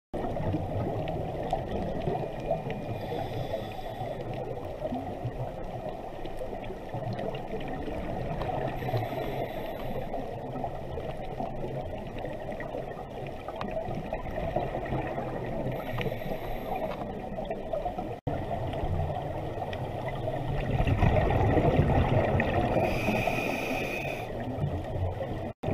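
Underwater rushing and bubbling heard through a GoPro's waterproof housing. A short hiss comes about every six to seven seconds, and a louder, rougher stretch of bubbling comes near the end: a scuba diver's regulator breathing.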